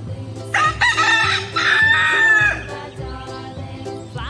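A rooster crowing once: a single cock-a-doodle-doo of about two seconds, starting about half a second in. Background music with a steady beat plays under it.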